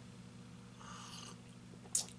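Quiet room with a steady low hum, and one faint mumbled word about a second in.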